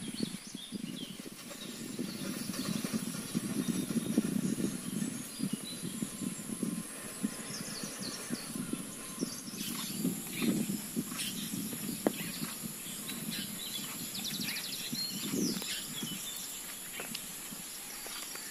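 Rural outdoor ambience: a steady high hiss under low, irregular rustling and rumbling, with birds chirping from about halfway through and a single sharp click about two-thirds of the way in.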